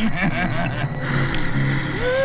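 Film soundtrack played on air: a man's voice in the first second, then a steady noisy rumble with a low hum underneath.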